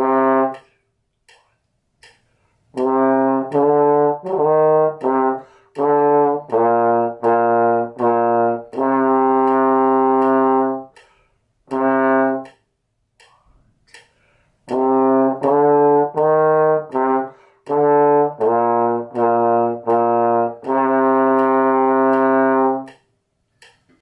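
Trombone playing a short method-book exercise twice through, detached notes around C, D, E-flat and B-flat with long held notes where half notes are tied together. A metronome ticks about twice a second underneath.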